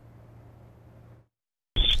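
Faint studio room tone with a steady low hum, cut to dead silence about a second in. Near the end a man's voice starts, with narrower, thinner sound.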